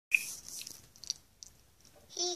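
Handling noise on the microphone: a sharp click, then rustling and a few crackles as a plush toy's fur brushes against it.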